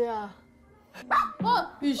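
A woman's voice softly drawing out a name, then a small dog barking three short times from about a second in.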